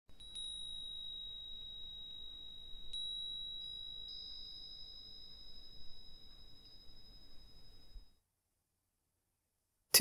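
A small high-pitched bell struck twice, about three seconds apart, each ring lingering and slowly fading away.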